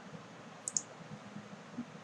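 A computer mouse button clicked once, a short sharp click about two-thirds of a second in, over faint steady room hiss.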